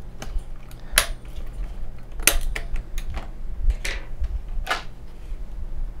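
Plastic push pins of an Intel stock CPU cooler clicking as they are pressed down and lock into the motherboard: a few sharp clicks, four of them loudest, spread over several seconds.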